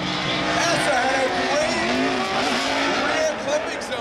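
Two drift cars sliding sideways in tandem, engines revving with notes rising and falling as the throttle is worked, over a steady hiss of tires squealing and spinning.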